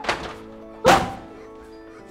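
Two heavy thuds of blows in a staged scuffle, the second, just under a second in, the louder, over steady background music.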